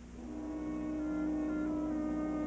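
Orchestral film-score music: a held low note swells in, and higher notes join about a second in.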